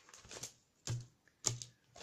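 Handling noise close to the microphone: a hand brushing against the recording device, then two distinct knocks about half a second apart.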